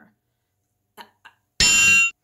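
A short bell-like ding, about half a second long with several ringing pitches, starting and stopping abruptly near the end; before it, two faint soft clicks.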